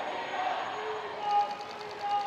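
Indistinct voices in a street, with short held calls, over general background noise; a quick, even run of faint clicks starts just past halfway.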